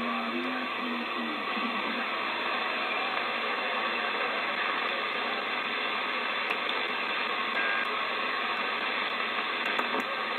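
Steady static hiss from a President Adams AM/SSB CB transceiver's speaker on the 11 m band, with a faint garbled voice in the first second or so. A few faint ticks come in the second half as the channel selector is turned.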